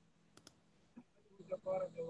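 Three faint, sharp clicks, two close together then a third about half a second later. Then a man's voice starts up, with a steady electrical hum on the line.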